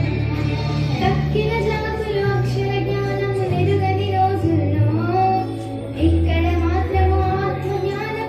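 A group of school students singing together into microphones over recorded backing music with a bass line that changes note about once a second.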